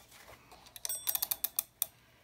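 White mechanical wind-up kitchen timer having its dial turned to set 15 minutes: a quick run of ratcheting clicks lasting about a second.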